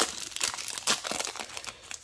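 Foil booster-pack wrapper crinkling in the hands as it is torn open and pulled apart, an irregular run of sharp crackles.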